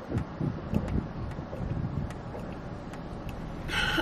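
A person drinking water through a straw from a large tumbler, with a few light clicks as the cup is handled. Behind it is a low, uneven outdoor rumble coming in through an open car window.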